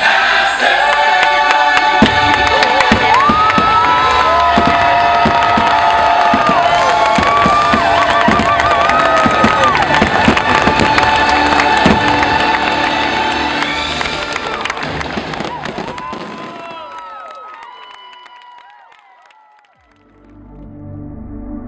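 Fireworks going off in quick, dense bangs over loud show music, with a crowd cheering. The bangs cluster through the first half or so, and the music and crowd then fade away over the last few seconds.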